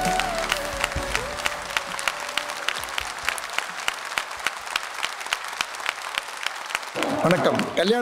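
An audience clapping at a quick, steady pace, about five claps a second, while background music dies away in the first second. A man's voice cuts in near the end.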